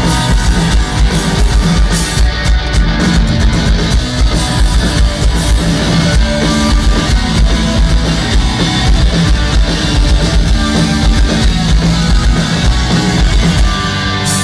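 Rock band playing live through a festival PA, heard loud from the crowd: electric guitars, bass and drum kit in an instrumental passage with a steady beat and no vocals.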